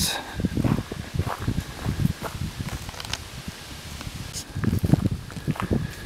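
Footsteps of a person walking on a dirt road, a steady run of soft crunching steps.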